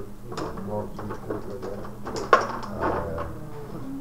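Rod hockey game in play: metal control rods sliding and spinning, with rattling clicks and clacks from the players and puck. A sharp clack a little over two seconds in is the loudest.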